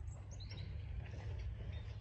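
A couple of short, faint bird chirps about half a second in, over a steady low rumble on the microphone.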